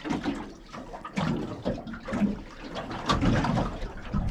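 Water slapping and sloshing against the hull of a small boat at sea, coming in uneven surges.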